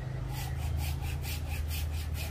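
Rhythmic dry scraping, about five strokes a second, starting just after the beginning, as the large potted bougainvillea stump is turned and shifted in its pot. A steady low hum runs underneath.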